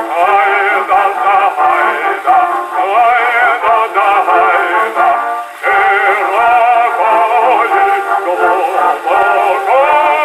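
An acoustic-era 78 rpm record of a male bass singing a slow Russian song, played back through a large horn gramophone. The sound is narrow and thin, with no deep bass and a heavy vibrato on the voice. The voice breaks off briefly about five and a half seconds in, between phrases.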